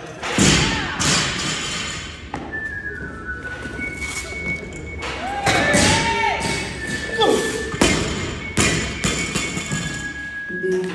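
Several heavy thuds of a loaded barbell with rubber bumper plates on the gym floor, the bar dropped after a lift, over music playing in the gym.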